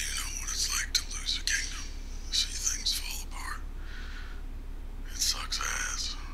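Speech only: a man's voice, TV episode dialogue playing.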